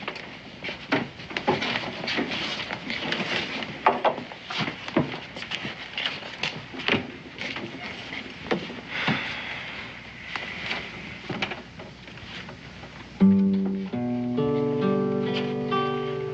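Crowd noise with scattered knocks and clatter, then near the end a loud plucked low note and an acoustic guitar starting to pick chords.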